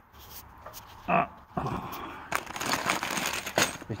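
A plastic bag of metal dish-mounting hardware being handled, the bag crinkling and the parts inside clinking, with a few sharp clicks through the second half.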